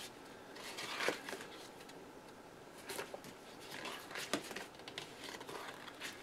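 Faint rustling of paper sticker-book pages being handled and flipped, with a few soft clicks of handling about one, three and four seconds in.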